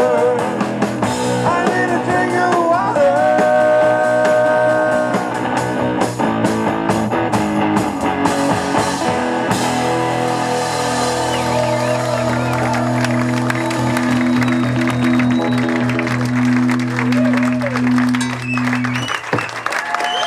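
Live rock band with electric guitar and a male singer playing the closing bars of a song. A sung line opens it, a run of hits comes about six to nine seconds in, and long sustained chords follow. The music stops near the end.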